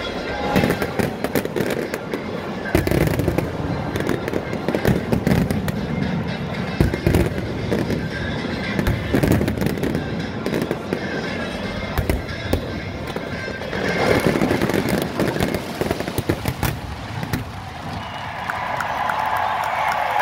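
Fireworks going off in quick, irregular bangs, starting about three seconds in, with band music playing underneath.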